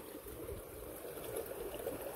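Faint, steady trickle of running water.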